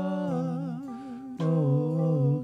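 A man's voice singing a slow melody in long, held notes over acoustic guitar; the phrase breaks off just under a second in and a new strummed chord and sung note come in about a second and a half in.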